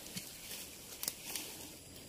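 Faint rustling of leaves with a few light clicks, from someone moving through low ground-cover plants.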